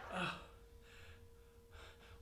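A man's short pained "uh", then a few faint gasping breaths, with a thin steady hum underneath.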